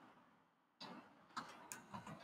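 A few faint, separate keystroke clicks on a computer keyboard, starting just under a second in.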